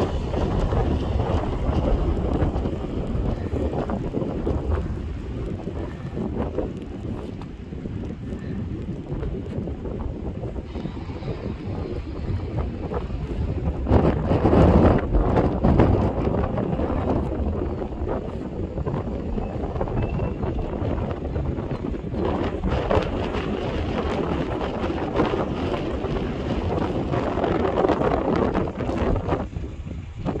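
Wind buffeting the microphone in uneven gusts, a low rushing rumble with the strongest gust about halfway through.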